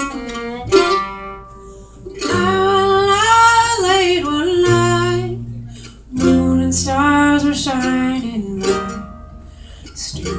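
Acoustic folk string band playing an instrumental passage: fiddle, acoustic guitar, mandolin and upright bass. A bowed fiddle melody with wavering held notes rides over strummed chords and low bass notes, easing off near the end.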